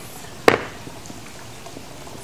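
A single sharp knock about half a second in as a small coated dumbbell is set down on an exercise mat, over a steady background hiss.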